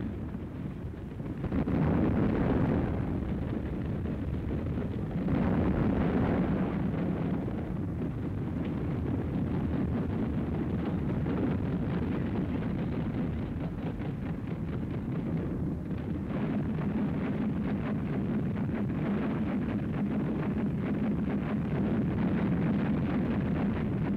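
Continuous rumble of heavy gunfire and explosions, swelling about one and a half and again about five seconds in, then running on steadily without distinct separate shots.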